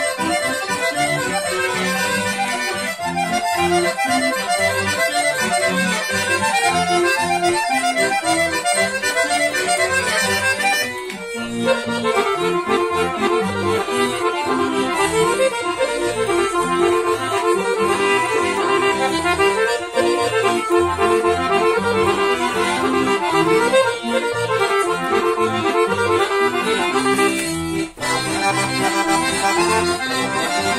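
Dallapé piano accordion playing a kolo folk dance tune: a melody on the treble keys over a rhythmic bass accompaniment, with short breaks about eleven and twenty-eight seconds in.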